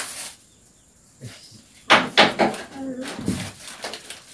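Thin plastic bags crinkling a few times as they are handled, with a few quiet spoken words in the second half.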